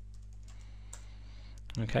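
Computer keyboard typing: a handful of scattered keystrokes as a command is entered at a terminal, over a steady low hum.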